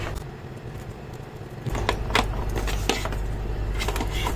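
A few short, sharp clicks and knocks of small electrical parts and a plastic plug being handled on a bench, the last one as a three-pin plug is pushed into a power strip. A steady low hum comes in about two seconds in.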